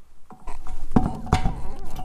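A power tool buzzing on a truck wheel's lug nuts, most likely a cordless impact wrench, starting about half a second in.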